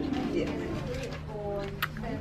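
A woman's voice drawing out long 'ooh' sounds on steady held notes, not words.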